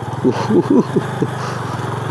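Motorcycle engine running at a steady pace under way, a constant low drone with even firing pulses.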